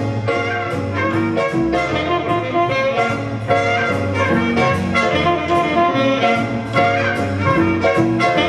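Big band playing jazz live: the saxophone and brass sections sound chords together over the rhythm section, with a steady beat.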